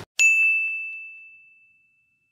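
A single ding sound effect: one bright, bell-like chime struck once just after the start, ringing out and fading away over about a second and a half.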